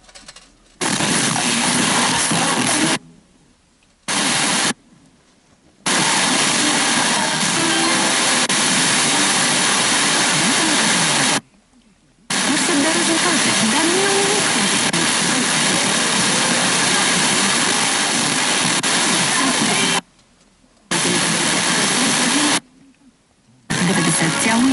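FM radio static from a Tivoli Audio PAL+ tuned to weak, distant signals: steady loud hiss with faint snatches of programme audio under it. It is broken by about six sudden silences, each about a second long, where the radio mutes as it is retuned.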